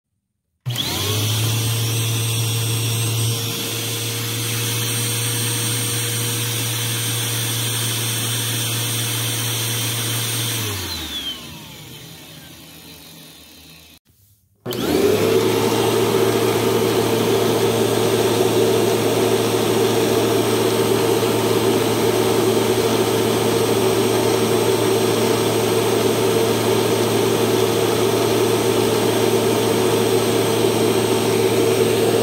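Eureka Lightspeed 4700 upright vacuum cleaner running steadily, then switched off about ten seconds in, its motor spinning down in falling pitch for a few seconds. It is switched back on about fifteen seconds in and runs steadily and louder, its brush roll spinning at about 6,800 rpm on a tachometer.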